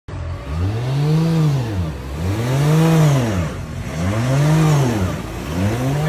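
Drift car's engine being revved repeatedly while standing in the pits, its pitch rising and falling in four smooth revs, each about a second and a half long.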